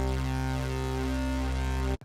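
A low note held on the Xfer Serum software synth, from oscillator A's 'PWM Juno' wavetable spread with unison voices. An LFO sweeps the unison detune, so the tone has a slowly shifting movement. The note sustains steadily and cuts off sharply at the end.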